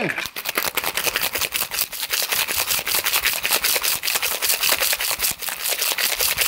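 Ice cubes rattling hard inside a stainless-steel cocktail shaker as a margarita is shaken, a fast even rattle of about seven hits a second kept up without a break.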